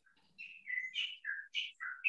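A small bird chirping: a quick run of short, high notes that hop up and down in pitch, starting just under half a second in and carrying on to the end.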